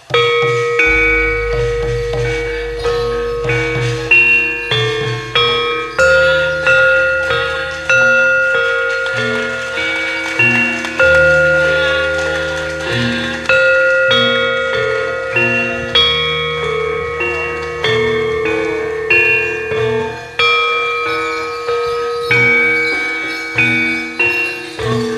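Javanese gamelan playing: metal-keyed mallet instruments strike steady, ringing notes that die away after each stroke, over deep low notes that change every few seconds.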